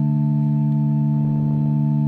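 A steady, unchanging held chord from the instrumental accompaniment of a chanted psalm, sounding alone in the pause between sung verses.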